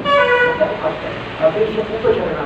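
A short horn toot, about half a second long, right at the start, over a man speaking.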